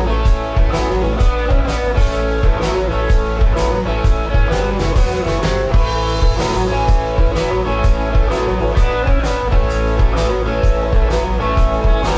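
Live rock band playing an instrumental passage: two electric guitars, one a semi-hollow body, over a drum kit keeping a steady beat.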